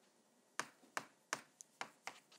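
Chalk striking a chalkboard in quick strokes: about five sharp clicks, the first about half a second in, with near silence between them.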